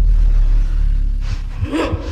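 A deep, loud cinematic rumble that fades across the two seconds, with a brief pitched cry or gasp near the end.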